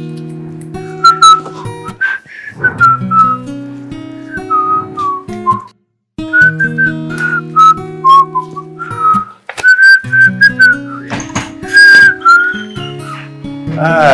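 A tune whistled in short, gliding phrases over a gentle acoustic guitar backing.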